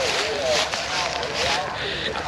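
Small wood fire crackling on a metal fire tray, with indistinct voices in the background.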